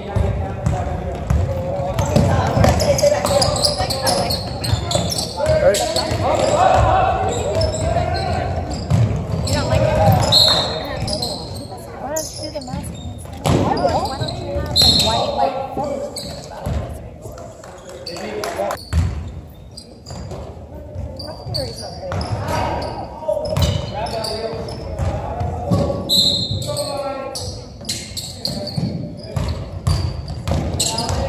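Basketball game in a gym: a ball bouncing on the hardwood court amid indistinct shouts and chatter from players and spectators, echoing in the large hall.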